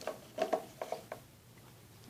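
Hard plastic drinking cups being handled and set down on a table: a few light knocks and rubs in the first second.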